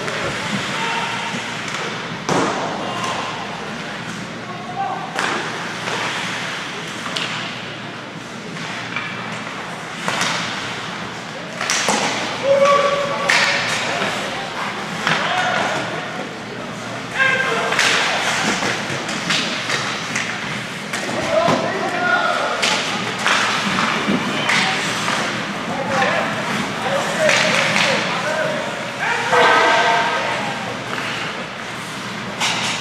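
Ice hockey game play: repeated thumps and knocks of the puck, sticks and players against the boards and ice, with indistinct shouting from players and spectators.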